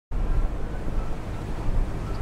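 Wind buffeting an outdoor microphone: a low, uneven noise that cuts in just after the start.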